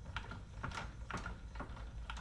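Trailer tongue jack being hand-cranked down to lower the coupler onto the hitch ball, its crank and gearing clicking irregularly, about three clicks a second.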